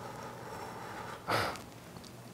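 Film production sound playing back: steady room tone with one short, audible breath from the actor about a second and a half in.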